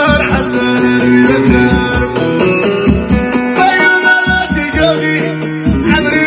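Live Amazigh Middle Atlas folk music: an amplified plucked-string melody over a steady drum beat, with a man singing into a microphone.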